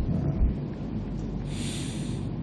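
A pause in a man's talk into a close microphone. There is a low rumble about half a second in, and a short hissing breath drawn in near the end, just before he speaks again.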